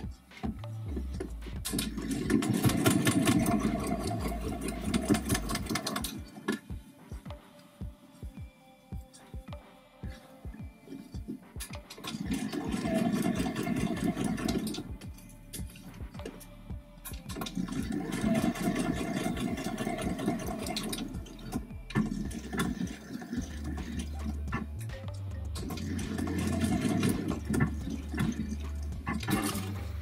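Electric sewing machine stitching in four separate runs of a few seconds each, the needle going fast and steady and then stopping between runs. Background music plays underneath.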